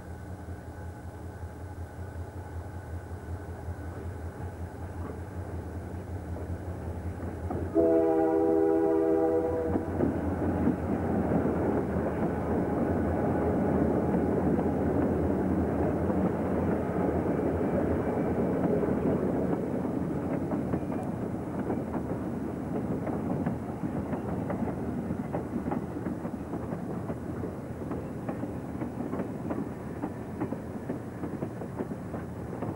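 Diesel locomotive approaching with its engine running steadily, then one horn blast of about two seconds some eight seconds in. After the horn the train's engine and wheel noise grows louder as it draws near, then eases slightly.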